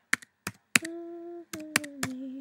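Computer keyboard keys tapped in short single strokes, typing a hex colour code, about seven clicks. Between them a person hums two held notes.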